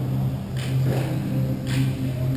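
Hockey rink sound: a steady low hum runs throughout, with three short scraping sounds from skates and gear on the rink surface about half a second, one second and nearly two seconds in.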